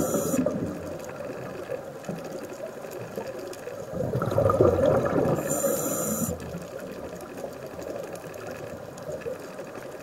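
Scuba diver's regulator breathing underwater: a bubbling burst of exhaled air about four seconds in that ends in a brief high hiss, with quieter water noise between breaths.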